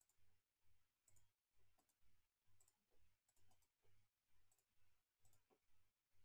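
Near silence with faint, fairly regular clicking from a computer mouse as text is selected, copied and pasted.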